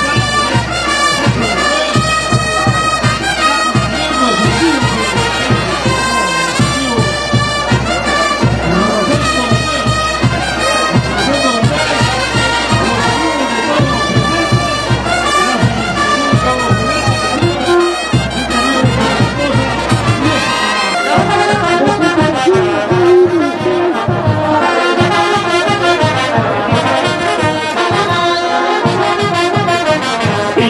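Festival brass band playing a lively tune, with trumpets and trombones carrying the melody over a steady bass-drum beat. The drum beat drops out about two-thirds of the way through while the horns keep playing.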